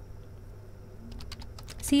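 Computer keyboard typing: a few key clicks, mostly in the second half.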